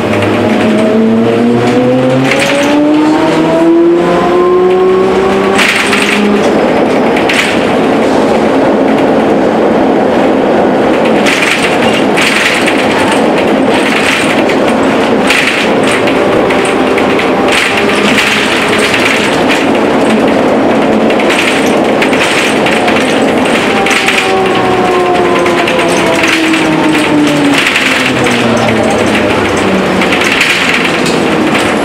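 Ikarus 280T articulated trolleybus heard from inside the passenger cabin. The electric traction drive whines, rising in pitch over the first few seconds as the bus gathers speed. Then comes steady running noise with body rattles, and near the end the whine falls in pitch as the bus slows.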